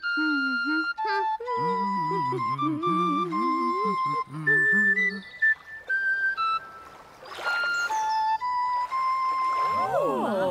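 An ocarina playing a slow, simple tune of held notes that step up and down, with brief laughter about a second and a half in.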